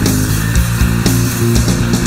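Stoner rock instrumental passage played by bass guitar and drum kit alone, with no guitar: held low bass notes under regular drum hits between sung lines.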